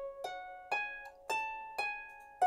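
Lever harp played one string at a time: about four single plucked notes of a slow pentatonic melody, climbing in pitch, each left to ring and die away.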